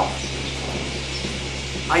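Steady low machine hum with an even background hiss, as from running ventilation or equipment.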